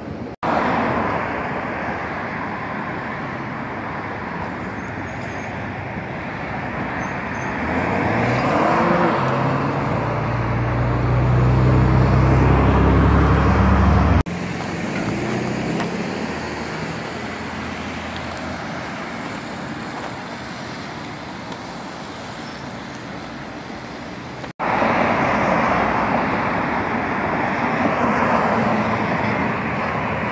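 Street traffic: cars passing on city roads, with one car's engine rising in pitch as it accelerates, loudest from about eight seconds in until it cuts off suddenly around fourteen seconds.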